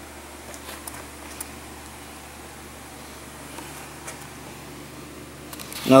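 Steady low hum of indoor room tone with a few faint clicks.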